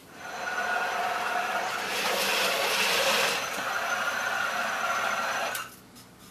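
An iRobot Create robot base driving across a wooden floor: a steady whine from its drive motors and wheels, louder in the middle, stopping shortly before the end.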